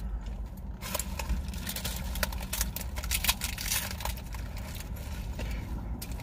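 Crispy taco shells crunching and paper wrappers crinkling in short, irregular crackles as people eat, over a low steady rumble inside a car.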